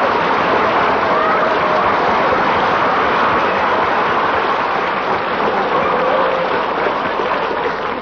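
Studio audience laughing and applauding in a long, steady round that eases slightly near the end.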